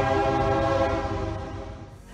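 Train horn sounding one long steady blast that fades away near the end.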